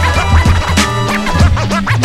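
Hip-hop beat with DJ turntable scratching: quick rising and falling scratched sounds over a bass line and drums.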